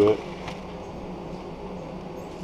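A steady low hum, like a fan or other running machinery, with a faint click about half a second in.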